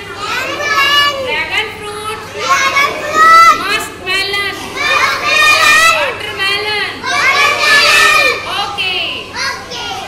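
A group of young children's voices, loud and high-pitched, calling out and talking over one another.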